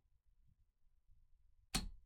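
Near silence, then a single sharp click near the end as the laptop's copper heat-pipe heatsink is pressed and seated into position on the motherboard.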